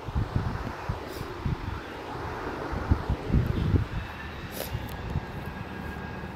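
Low rumbling background noise with irregular soft low thumps and a few faint ticks.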